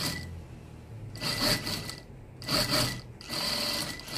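Brother Exedra single-needle lockstitch industrial sewing machine stitching in three short runs, stopping briefly between them, starting about a second in.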